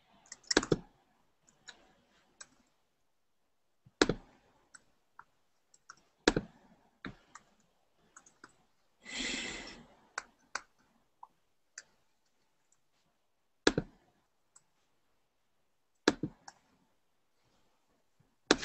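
Scattered single clicks of a computer keyboard and mouse, irregular and often a second or more apart. About halfway through comes a short rushing noise lasting about a second.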